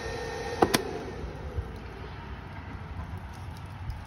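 A sharp double click as the emergency-stop push button is pressed, cutting the 24-volt power. The small 24-volt cooling fan's hum then winds down in pitch and fades.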